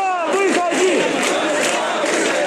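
A protest crowd shouting, many voices overlapping loudly.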